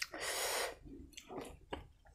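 A person eating by hand: a loud, breathy mouth sound lasting about half a second, then a few softer wet mouth and hand noises.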